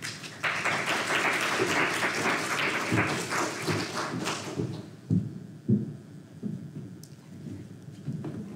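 Audience applauding for about four seconds, then dying away, followed by a few soft thumps.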